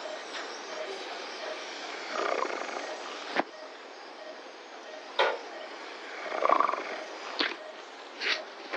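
Operating-room background: a steady hiss with a faint, rapid pulsing. Three sharp clicks come about three and a half, five and seven and a half seconds in, and two short, louder swells of noise come around two and six and a half seconds in.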